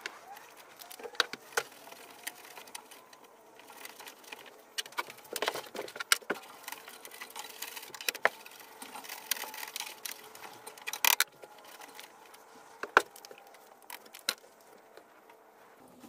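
Hand-cleaning work in an air handler's condensate drain pan: irregular clicks, knocks and light scraping as a scrub brush and rag are worked through the pan.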